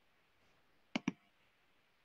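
Two quick clicks of a computer mouse button close together about a second in, over near-silent room tone.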